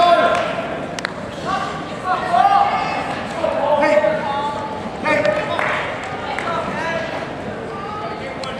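Several people shouting and calling out in raised, drawn-out voices, with no clear words. A single sharp knock comes about a second in.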